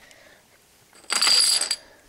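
Plastic dominoes clattering together in one short burst about a second in, lasting about half a second, with a few small clicks before it.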